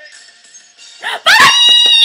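Excited high-pitched squealing from the women: a loud squeal starting about a second in, rising, holding one pitch, then dropping away. Before it, the music video's soundtrack plays faintly.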